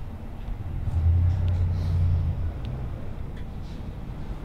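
A low rumble that swells about a second in and fades by the middle, over a steady low background, with a few faint clicks.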